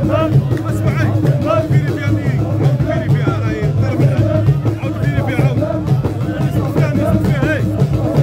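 Live Algerian baroud troupe music: many men's voices chanting together over a steady drum beat, with crowd noise around them. No gunshots are heard.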